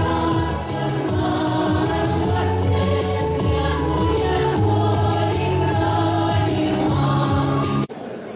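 Massed choir of several folk ensembles singing together, with sustained chords. The singing cuts off abruptly just before the end.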